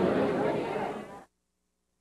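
Indistinct chatter of many people in a room, fading over about a second and then cutting off abruptly to dead silence as the camcorder recording breaks.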